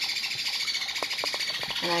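A steady, high-pitched chatter of many birds in the background, with a few short clicks between about one and two seconds in.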